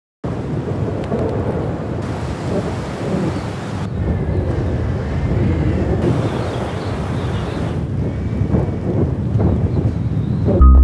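Strong blizzard wind blowing hard: a loud, steady, low rushing rumble that shifts in tone every couple of seconds, with a faint thin whistle at times.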